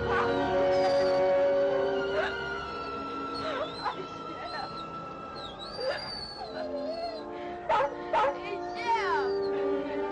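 Rough collie whining and yipping excitedly in a string of short rising and falling cries, with two sharper yelps about eight seconds in, over an orchestral score with strings.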